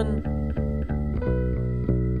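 Instrumental backing of a song: guitar and bass playing a steady picked figure, about six notes a second, with no voice.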